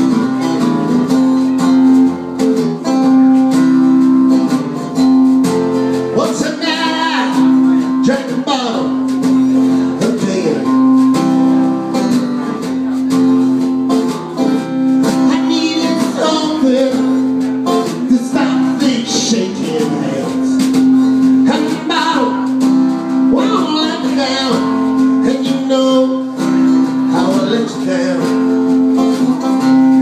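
Live honky-tonk country music: a steadily strummed acoustic guitar, with a sung melody coming in phrases from about six seconds in.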